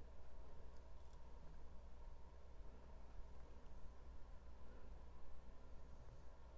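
Quiet room tone with a steady low hum, and a few faint ticks about a second in.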